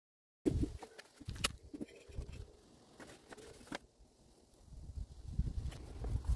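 Faint handling noise: after a moment of dead silence, a few sharp clicks and knocks about half a second, a second and a half and nearly four seconds in, over a low rustle.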